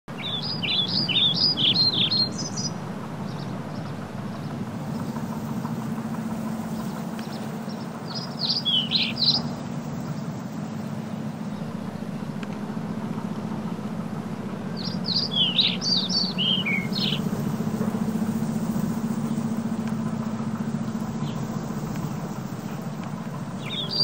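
A small bird chirping in three short bursts of quick, rising and falling high notes, each burst lasting about two seconds, over a steady low hum.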